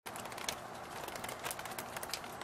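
Steady rain falling outdoors, a soft even hiss with many small scattered ticks of drops striking the wet wooden deck and leaves.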